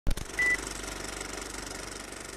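A film projector running with a fast, even clatter, as on an old film leader, after a sharp click at the start and a short high beep just under half a second in.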